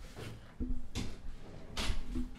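Several short knocks and clunks, the loudest near the end.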